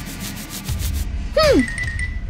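Cartoon head-scratching sound effect, a fast, even scratching rub lasting about a second. About a second and a half in comes a short vocal sound falling steeply in pitch.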